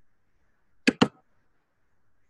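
Two short clicks in quick succession about a second in, amid near silence.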